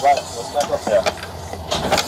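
People talking over a low steady hum.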